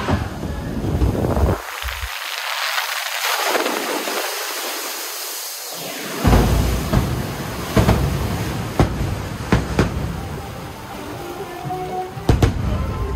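Log flume boat plunging down the big drop: a rushing hiss of air and water that swells and fades, ending in a loud splash about six seconds in. In the second half, several sharp fireworks bangs, about a second apart.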